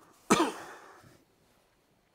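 A man clears his throat once, loudly. It starts sharply about a third of a second in and trails off within a second.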